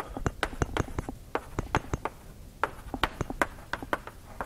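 Chalk writing on a blackboard: a quick, irregular run of sharp taps as the strokes are made.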